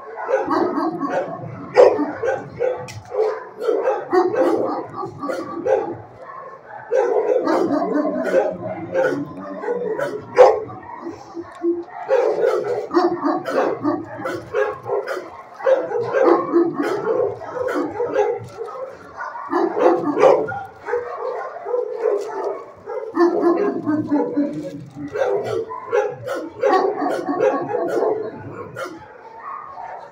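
Dogs barking almost without pause in a shelter kennel, with many sharp close clicks and crunches as a dog eats dry kibble from a metal tray.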